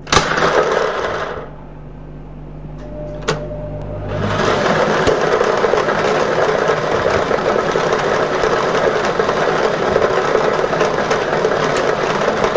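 Lottery ball-drawing machine mixing its numbered balls. After a brief burst of noise at the start and a quieter hum with a single click about three seconds in, a steady dense clatter of balls tumbling in the chamber sets in at about four seconds.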